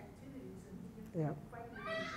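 Faint, distant speech from someone off the lecturer's microphone, with a short, loud squeal that swoops down and back up in pitch about a second in.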